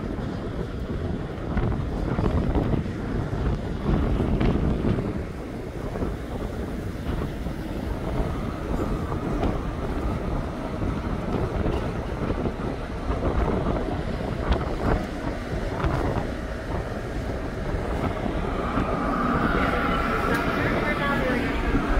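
Wind buffeting the microphone on an open ferry deck over the steady low rumble of the ship's engines.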